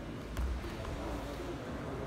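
Sports hall room noise with a low rumble, and a single dull thump about half a second in.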